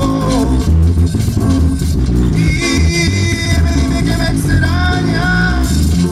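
Live band music: a singer over guitar, bass and a steady beat.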